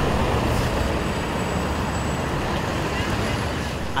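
Steady street traffic noise, mainly the low, even rumble of a heavy vehicle's engine.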